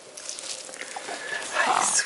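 A baby's short, breathy vocal sound about one and a half seconds in, loud and without a clear pitch.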